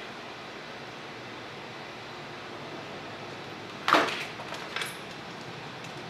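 Objects handled on a repair workbench: one sharp knock about four seconds in and a lighter click just under a second later, over a steady low hiss.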